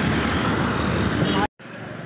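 Steady rush of road and wind noise from a moving vehicle in city traffic, cutting off abruptly about one and a half seconds in, followed by quieter indoor room tone.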